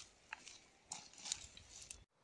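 Machete cutting and pulling through dry brush and ferns: faint, crackling swishes and rustles, with a quick run of strokes in the second half.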